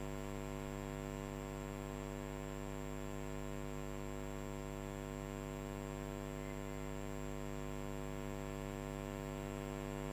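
Steady electrical mains hum with a stack of evenly spaced overtones, unchanging throughout, with nothing else heard over it.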